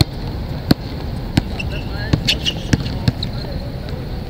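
Basketball bouncing hard on an outdoor court as a player dribbles: five or six sharp bounces at uneven intervals of roughly half a second, over a steady background hiss.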